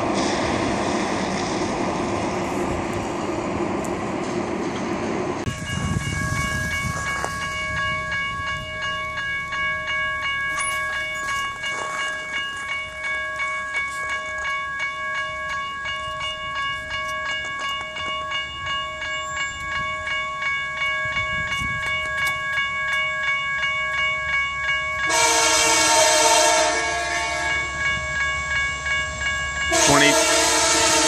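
Train rolling past, then a railroad crossing bell ringing steadily. Near the end an approaching locomotive's horn sounds a blast of about two seconds, and a second blast starts just at the end, over the bell.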